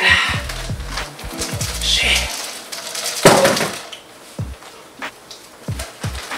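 Background music with a bass line that stops about two seconds in, followed by a loud, short cry about three seconds in and a few light clicks of a metal spoon.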